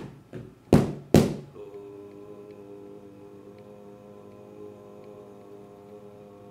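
Wooden drumsticks striking padded practice drums: four strikes in the first second, the last two loudest. Then a steady ringing tone of several pitches holds to the end, with a few faint ticks.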